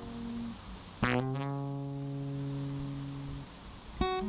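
Acoustic guitar played solo: a chord rings out and fades, then about a second in a new chord is struck, its low note sliding up in pitch, and it rings for about two and a half seconds before dying away.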